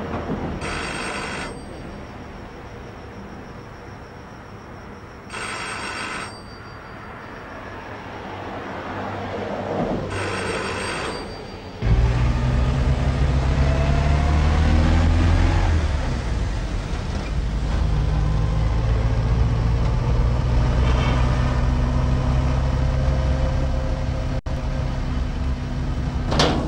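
A telephone rings three times, each ring about a second long and some five seconds apart. About twelve seconds in, the sound cuts suddenly to a car's engine and road noise heard from inside the car, steady, low and louder than the rings.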